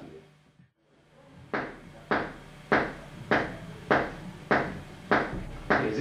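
Muted, percussive notes struck on an electric bass, keeping a steady pulse of about one hit every 0.6 seconds, eight hits starting about a second and a half in after a brief silence.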